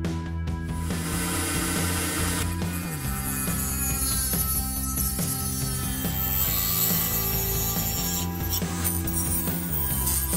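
A small rotary tool with a cutting bit grinding into a styrene plastic model car body: a high, even grinding buzz that comes in about a second in, over background music.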